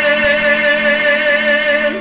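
A male singer holds one long note with vibrato over a karaoke backing track; the note breaks off near the end.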